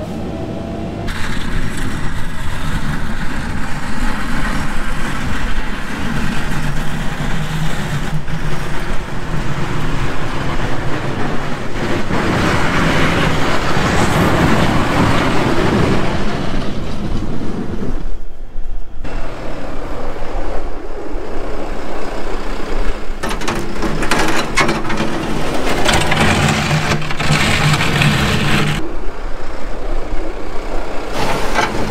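Farm loader tractor's diesel engine running as the tractor drives about clearing snow with its bucket, with a louder, rougher stretch in the middle and a brief drop in sound about two-thirds of the way through.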